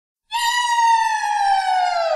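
Opening of a disco track: a single synthesizer tone starts about a third of a second in and slowly glides down in pitch, like a siren winding down.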